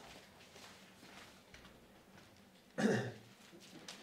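A person clears their throat once, sharply and briefly, about three seconds in, after a few seconds of near quiet.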